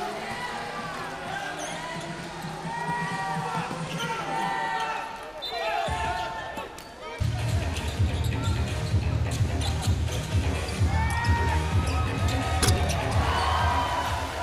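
Basketball game sound on a hardwood court: the ball bouncing as it is dribbled, with short squealing glides of sneakers. A louder low rumble comes in about seven seconds in.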